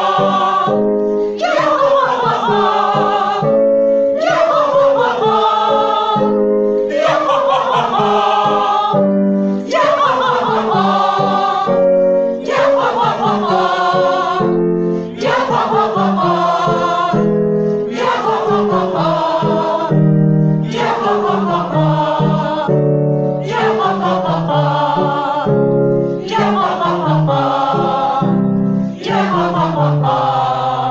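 A group of singers, mostly women, singing a vocal warm-up exercise together: a phrase that runs down a scale, repeated over and over, a new one about every two and a half seconds.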